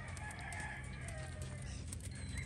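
A rooster crowing faintly over a quiet, steady outdoor background.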